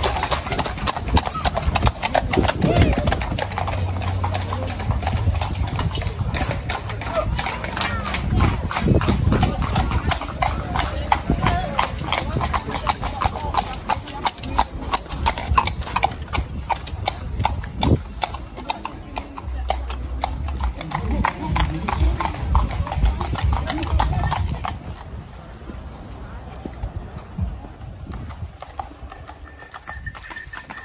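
Horses' hooves clip-clopping at a trot on a tarmac road, a busy run of sharp strikes from more than one horse. It grows quieter for the last few seconds.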